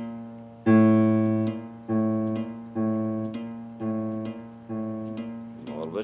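Low A struck repeatedly on a keyboard as a reference pitch, about once a second, with the nylon-string guitar's open A string sounding alongside it. The guitar's A string is sharp of the reference.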